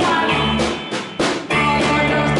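Live garage rock band: electric guitars, drums and a sung vocal. The band drops back for a moment in the middle and comes back in full about a second and a half in.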